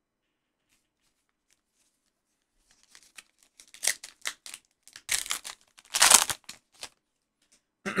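A baseball card pack being torn open and its wrapper pulled off the cards: a run of short crinkling rips and rustles, starting about three seconds in and loudest about six seconds in.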